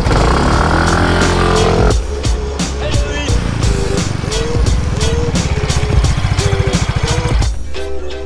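Small automatic scooter's engine revving as it pulls away, for about two seconds. Then background music with a steady beat and a melody.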